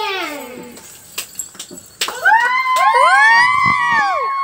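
A few sharp clicks, then from about halfway several high voices cry out together in long, overlapping calls that rise and fall in pitch.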